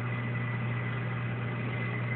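Steady low electrical hum of running aquarium equipment, with a faint high whine and a hiss over it; the level holds constant.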